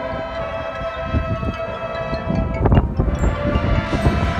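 Marching band's brass and woodwinds holding a long sustained chord, with bass drums and front-ensemble percussion hits building underneath from about a second in, and a loud percussion strike a little under three seconds in.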